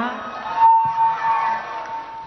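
The tail of a woman's drawn-out word through a stage microphone, then a single steady high tone held for more than a second over a faint background haze.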